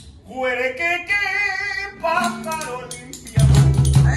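A male voice sings a solo phrase of a marinera norteña while the percussion drops out. Cajón and strummed guitar come back in loudly with a steady beat near the end.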